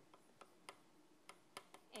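Chalk tapping and clicking on a blackboard while letters are written: a run of faint, sharp clicks, about seven in two seconds and irregularly spaced.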